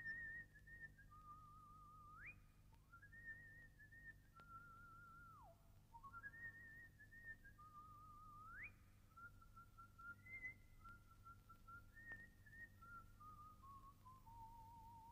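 A faint whistled tune: a single wavering note line stepping between pitches, with a few quick slides up or down between phrases.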